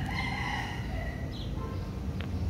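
A rooster crows once: one long held call that fades out about a second in, over a steady low rumble.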